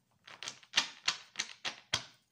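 A deck of tarot cards being shuffled by hand: a run of sharp card slaps about three a second, the loudest just before the end.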